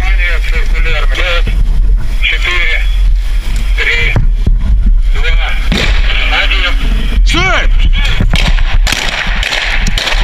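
Men shouting commands during a tactical assault drill, broken by several sharp gunshot cracks from rifles. A loud yell rises and falls about seven and a half seconds in. A steady low rumble runs underneath, typical of wind on a helmet-mounted camera.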